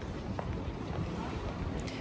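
Steady low rumble and hiss of an airport terminal hall while walking through it, with a wheeled suitcase rolling over the tile floor and a few faint ticks.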